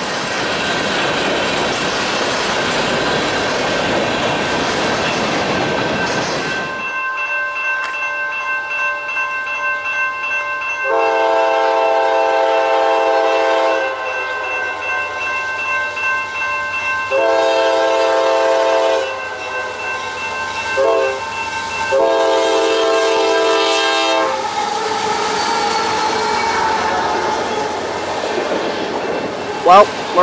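Freight cars rolling past on the rails with a steady rumble. After an abrupt change, an approaching CSX freight locomotive sounds its air horn: long, long, short, long, the grade-crossing signal. The train then rolls by, its autorack cars rumbling past.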